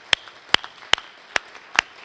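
A steady series of sharp clicks, about two and a half a second, evenly spaced.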